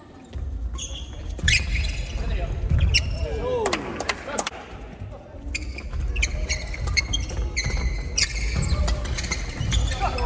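Badminton doubles rallies: crisp racket strikes on the shuttlecock come in quick succession, densest in the second half. Under them run thudding footsteps and squeaking shoes on the wooden gym floor.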